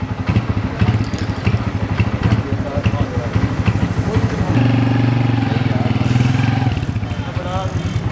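Small motorcycle engine idling with a fast, even putter, running louder and steadier for a couple of seconds past the middle before dropping back. Brief voices come in over it.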